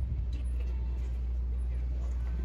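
Pickup truck engine running at a slow idle as the truck rolls slowly through, a steady low rumble, with faint voices in the background.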